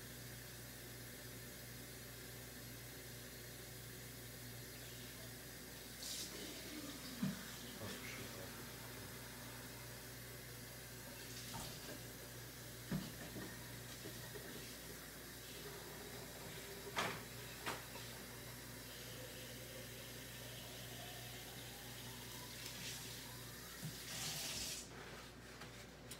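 Kitchen tap running faintly as bottles are filled with tap water, with a few scattered knocks as the bottles are handled. Late on, a faint note rises as a bottle fills up.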